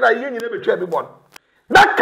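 A man speaking in Twi, breaking off about a second and a half in and starting again just before the end.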